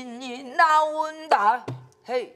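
A woman singing pansori in a strong voice with a wide, wavering vibrato, and a buk barrel drum struck once about one and a half seconds in.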